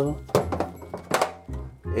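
A block of ice knocking against a stainless-steel sink a few times as a watch band is worked free of it, the loudest knock about a third of a second in, over background music.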